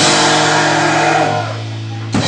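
Amateur ska-punk band playing live, with drum kit, electric guitar and bass. A hit opens the passage and chords ring on; about one and a half seconds in the band thins out, leaving a low bass note sounding until the drums come back in at the end.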